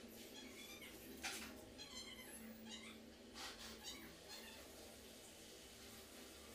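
Several short, high-pitched animal calls, faint, over a low steady hum; they stop after about four seconds.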